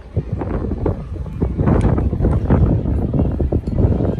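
Wind buffeting a handheld phone's microphone outdoors: a loud, uneven low rumble with scattered faint knocks and rustles.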